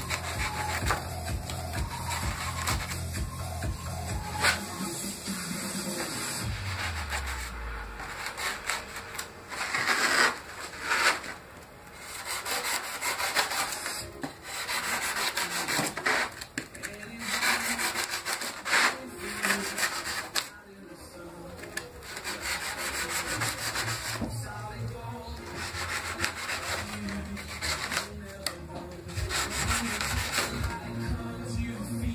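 Expanded polystyrene (styrofoam) being sanded by hand: irregular scratchy rubbing strokes that come and go, with short pauses. A low steady hum sits underneath at the start, glides down and fades after a few seconds, and comes back near the end.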